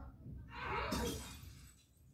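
Film soundtrack from a television, picked up by a phone in the room: a noisy crash-like burst about half a second in that fades over about a second.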